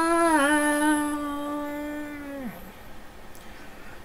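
A man's voice singing one long held note into a microphone, with a small dip in pitch early on. The note falls away in pitch and stops about two and a half seconds in.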